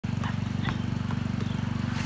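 A basketball dribbled on an asphalt driveway, four quick bounces in the first second and a half, over a steady, loud low droning hum.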